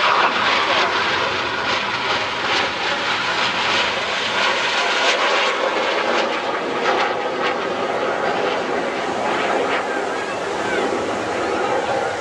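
Jet noise from a Red Arrows BAE Hawk T1 flying a solo display pass overhead, a steady rushing sound that holds at an even level throughout.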